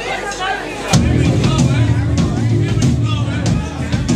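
Voices for about a second, then a hard-rock band comes in all at once and plays loudly: electric guitar, bass guitar and drum kit.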